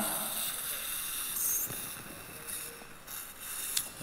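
Surgical suction tip in the patient's mouth hissing as it draws up the saline rinse, a steady airy hiss that slowly fades.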